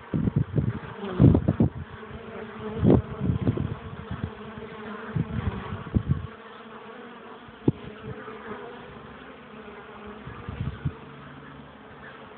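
Honeybees buzzing around a top-bar hive, a steady hum of foraging traffic. Irregular low rumbles and bumps, louder than the buzz, come through the first half and then fade, leaving the hum on its own.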